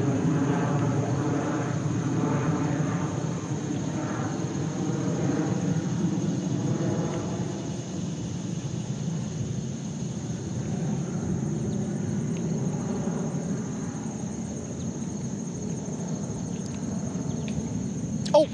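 A chorus of insects makes a steady, high-pitched drone. A lower, rougher noise runs beneath it, heavier in the first half and easing after about eight seconds.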